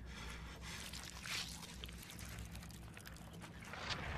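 Quiet, steady low hum of a film's background ambience, with faint rustling and a short breathy hiss about a second in.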